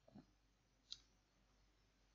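Near silence with one faint keyboard key click about a second in.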